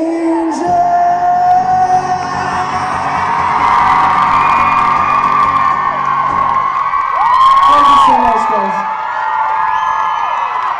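Acoustic guitar's final strummed chord ringing out for several seconds under a live audience's high-pitched screaming and whooping, which swells after the chord dies away.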